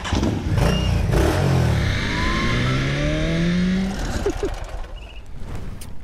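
Motorcycle engine accelerating, its pitch climbing steadily for about three seconds before fading away.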